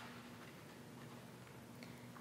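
Near silence: room tone with a faint steady low hum and a single faint click near the end.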